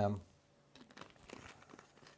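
Plastic water bottle crinkling faintly as it is handled, a scatter of small crackles after a short spoken 'eh'.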